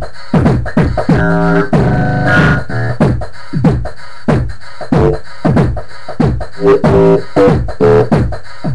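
A programmed hip-hop beat from an electronic drum machine or sampler. Deep kick-drum hits fall in pitch and repeat two to three times a second, with held pitched synth or sample notes layered over them from about a second in and again near the end.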